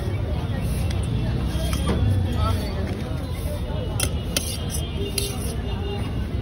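Street noise with a steady low traffic rumble and voices in the background, and a few sharp clinks of a steel spoon against a steel bowl in the second half as the masala is served.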